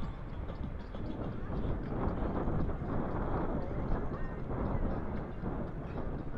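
Moving-bicycle noise amid a large group of cyclists: wind buffeting the microphone and tyres on the road surface, with faint voices of other riders.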